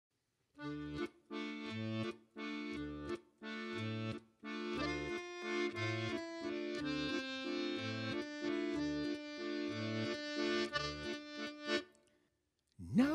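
Accordion playing the opening of a rock song, with chords in a steady rhythm over low bass notes. It comes in short phrases with brief gaps at first, then plays on without a break from about four and a half seconds in.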